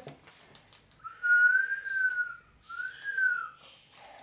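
A person whistling two long notes, the first longer than the second, each gently rising and then falling in pitch.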